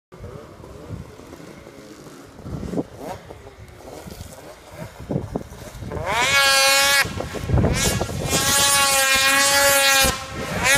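Polaris RMK 800 two-stroke snowmobile with a GGB aftermarket exhaust can, faint at first while far off, then loud from about six seconds in as it climbs toward the listener. Its engine is held at high revs, with a short drop in revs near seven seconds.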